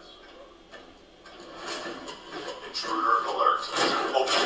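Soundtrack of a TV drama episode playing back: quiet for the first second, then voices of the show's characters with effects, growing louder, and a single sharp crack shortly before the end.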